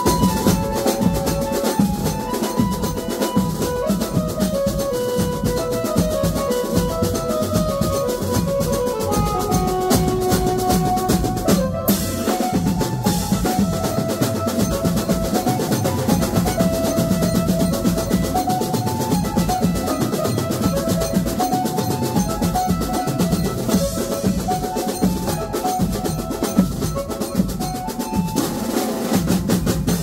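Banjo party band playing live: fast, dense drumming on snare-type drums, bass drum and cymbals under an electronic keyboard melody that steps down and back up. The music breaks off for an instant about twelve seconds in.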